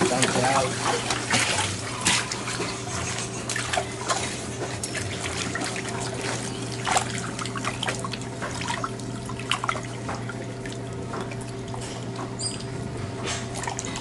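Water sloshing and splashing irregularly in a plastic basin as hands rub and rinse a freshly gutted tilapia, over a steady low hum.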